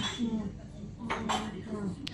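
Café background: indistinct voices, with a sharp clink of dishes or glassware about a second in.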